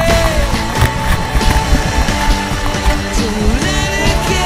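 Rock song playing as background music, with a steady beat.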